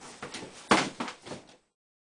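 A few short knocks and thumps, the loudest about three-quarters of a second in, then the sound cuts off suddenly.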